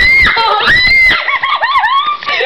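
High-pitched human screaming: two long screams in the first second, then a run of shorter squeals.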